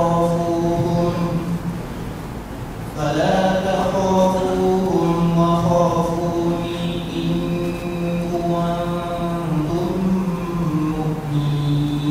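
A man reciting a Qur'anic verse in Arabic in the melodic tajwid style, holding long, level notes. He breaks off briefly about two seconds in, then resumes.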